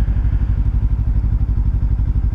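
Kawasaki Ninja 300's parallel-twin engine idling steadily, a low, evenly pulsing sound.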